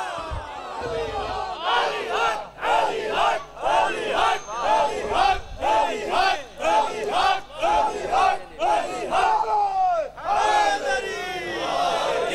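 A crowd of men chanting short shouted slogans in a steady rhythm, about two or three calls a second, led by one man calling out from the audience. It stops briefly near the end, then swells again.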